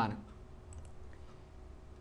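Two faint computer mouse clicks a little under a second in, over a low steady hum.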